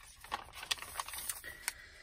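Paper pages of a handmade journal being turned and handled by hand: light rustling with a few short, sharp ticks.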